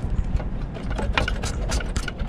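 Irregular small clicks and taps of needle-nose pliers and wire connectors against the sheet-metal housing of a rooftop RV air conditioner, as a wire is pulled off the start capacitor, over a low steady rumble.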